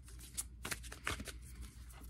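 A deck of oracle cards being shuffled by hand: quiet, irregular taps and slides of cards against each other.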